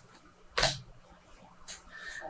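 A single sharp computer keyboard keystroke about half a second in, sending the typed prompt, with a fainter click near the end.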